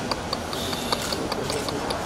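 Rapid camera shutters clicking in quick succession, about five clicks a second.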